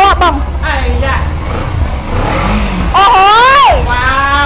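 A motorcycle engine running under a woman's speech, with a steady low hum and a brief rev about two seconds in.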